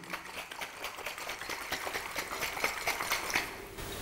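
Water sloshing and splashing inside a small plastic bottle shaken rapidly by hand to dissolve GH-raising mineral powder into reverse-osmosis water; the shaking stops shortly before the end.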